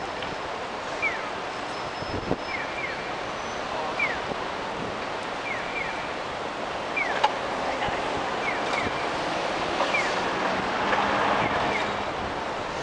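Pedestrian crossing signal sounding its bird-like walk cue: a short falling chirp every second and a half, alternating one chirp and a quick pair, the 'piyo' / 'piyo-piyo' call-and-answer of a Japanese accessible crossing. Beneath it, the steady hum of city traffic.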